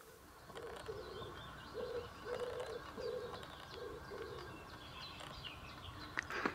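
A dove cooing: a low phrase of several short notes, repeated over the first few seconds. Fainter, higher chirps of small songbirds run alongside it.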